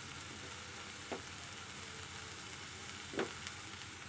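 Amaranth leaves frying in oil in an aluminium kadai, a soft, steady sizzle, with two brief clicks, about a second in and again near the end.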